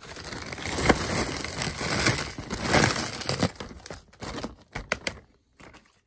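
Broken fused-glass shards poured out of a plastic zip-lock bag into a plastic tub: the bag crinkles and the glass pieces rattle and clink in a dense rush for about three and a half seconds, then a few separate clinks follow as the last pieces drop.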